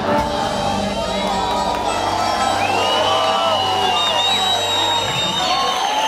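A live samba band's last held chord rings out and stops about five seconds in, while a crowd cheers and whoops over it.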